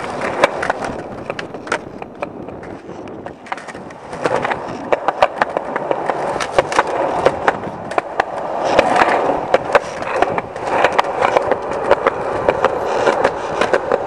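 Skateboard wheels rolling on concrete pavement, a steady rumble broken by many sharp clicks and knocks from the board, growing a little louder in the second half.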